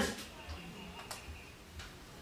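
Quiet room tone in a pause between spoken sentences, with three faint clicks spread through it.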